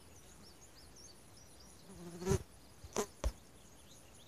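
A brief low buzz about two seconds in, then two sharp knocks, over faint high chirping.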